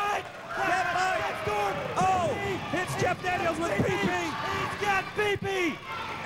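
Excited voices shouting and yelling over one another, with a few dull thuds of bodies hitting the wrestling ring mat.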